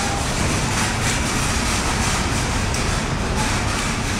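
Steady low rumbling noise with no let-up, like the inside of a moving vehicle.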